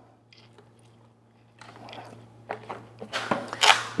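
Plastic epoxy pails and their snap-on lids being handled and pried open: irregular crackling clicks and snaps that grow louder after a quiet start, over a steady low hum.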